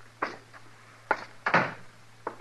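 Radio-drama sound effects of boots walking across a wooden floor, a few irregular knocks, with a heavier thud about one and a half seconds in.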